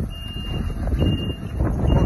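A MAN truck's reversing alarm beeping about once a second, a single high note each time, over the low rumble of the truck backing up slowly.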